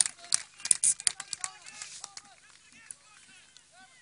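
Scattered handclaps and distant shouts from the sideline and pitch, sharp and frequent for the first couple of seconds, then thinning out into a few faint far-off voices.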